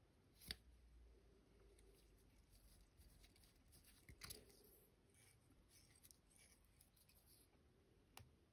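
Near silence with faint rustling and two soft clicks, about half a second in and about four seconds in, from hands working a CDC feather and thread on a fly at a tying vise.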